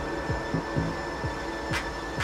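Techno played from a DJ mixer: a steady kick-drum beat with a thin high tone held over it, and a short hiss sweep near the end.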